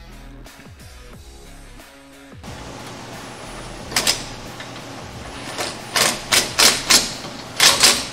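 Pneumatic wrench run in short bursts, about seven quick blips in the second half, snugging the transmission-mount bolts on a 1979 Camaro. Background music plays for the first couple of seconds.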